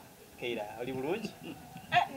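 A man's voice breaking into a short burst of laughter about half a second in.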